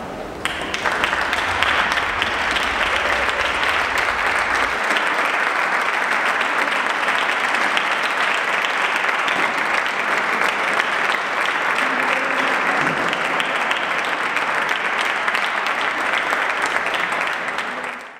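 Audience applauding: many people clapping. It starts abruptly about half a second in and keeps on steadily.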